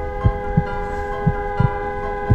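A heartbeat sound effect, a double thump about once a second, over a steady held chord, used to signal nervous tension.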